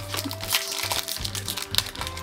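Foil Pokémon booster pack wrapper crinkling and crackling in quick irregular bursts as it is torn open and peeled back by hand, over background music.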